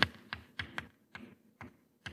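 Chalk on a blackboard while writing: a quick, irregular series of about eight sharp taps and clicks as the chalk strikes and lifts off the board.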